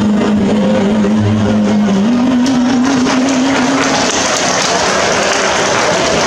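The last long held note of a song, stepping up once in pitch, dies away about four seconds in as the banquet crowd breaks into applause.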